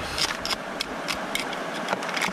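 Screwdriver scraping and prying in a rock crevice, with scattered sharp clicks of metal on rock and grit dropping into a gold pan, over the steady rush of creek water.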